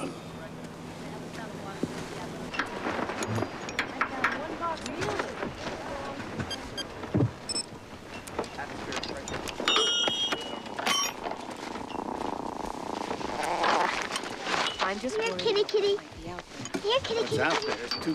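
Mostly people talking, with a brief cluster of high-pitched tones about ten seconds in.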